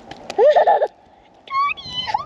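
A young boy's high-pitched wordless vocal sounds: a rising cry about half a second in, then another near the end, with a few small clicks just before the first.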